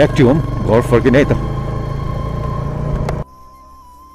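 Royal Enfield Hunter 350's single-cylinder engine running at riding speed, with wind and road noise and a man's voice over it for the first second or so. The sound cuts off abruptly about three seconds in, leaving faint music.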